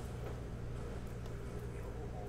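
Steady low hum of room tone, with a few faint light clicks of trading cards being handled.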